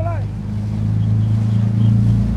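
Boat engine running with a steady low hum that grows gradually louder; a short shout cuts off right at the start.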